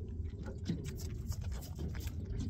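Quick, irregular wet clicks and pattering from a caught King George whiting being handled and unhooked, over a steady low hum.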